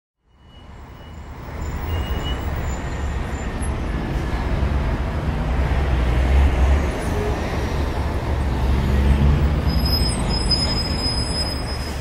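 Wind buffeting an action camera's microphone with skis running on snow: a steady rushing noise with a heavy low rumble, fading in over the first second and a half.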